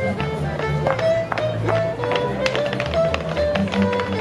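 A fiddle playing a lively folk dance tune while clog dancers' wooden-soled clogs tap out quick, irregular steps on the dance board.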